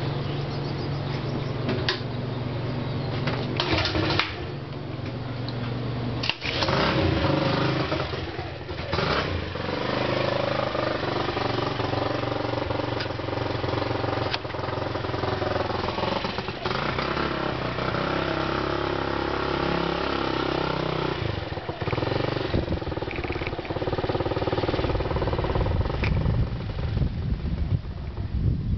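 Four-stroke engine on a motorized bicycle running: a steady idle at first, then revving up and down as the bike gets under way. Near the end, wind on the microphone joins the engine as the bike rides.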